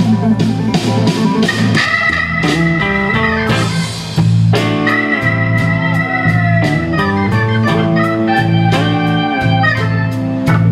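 Live blues band: a Hammond-style organ solo of long held chords and notes over electric bass and a drum kit keeping a steady beat.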